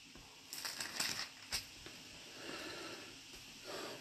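Quiet rustling and flipping of thin Bible pages as the passage is searched for, with a light click about one and a half seconds in.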